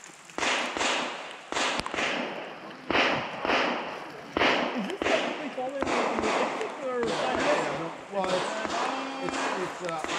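Handgun shots fired in quick strings at the targets of a shooting stage, many reports at uneven spacing with short pauses between strings, each with a brief echo.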